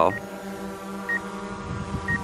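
DJI Mavic 2 Pro quadcopter hovering, its propellers giving a steady hum of several tones. A short high electronic beep sounds about once a second over it.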